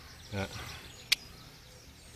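A single sharp click about a second in, over a faint steady outdoor background.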